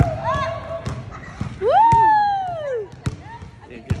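A basketball bouncing on a hardwood gym floor: irregular thumps, the loudest right at the start. About halfway through there is one long voice call that rises and then falls in pitch.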